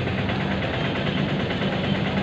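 Idling motorcycle and vehicle engines, a steady low hum.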